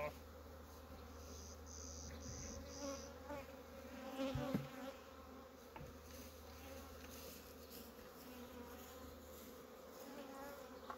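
Honey bees flying around an opened hive: a faint, steady hum of many bees, with the buzz of single bees passing close to the microphone. A soft knock about four seconds in.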